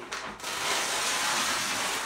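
A large sheet of flip chart paper rustling loudly as it is lifted and turned over, beginning about half a second in.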